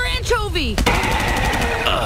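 Cartoon soundtrack: a character's voice gliding down in pitch, then a short clatter about a second in, followed by a steady mechanical-sounding sound effect.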